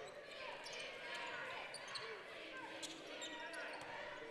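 Quiet arena game sound from a basketball court: a ball dribbled on the hardwood floor, with a low murmur of crowd and players' voices.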